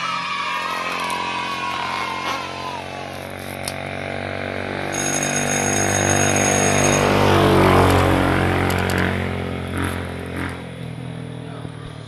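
A motor vehicle passing on the road. Its engine grows louder, is loudest about eight seconds in, then fades as its pitch drops.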